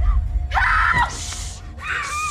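A woman's scream, stifled by a hand pressed over her mouth, about half a second in, followed by a hissing breath and a second shorter cry near the end, with low film score underneath.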